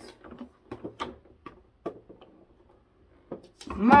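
Light clicks and knocks from the plastic housing of a portable air cooler being handled: about half a dozen sharp clicks in the first two seconds, then a short pause.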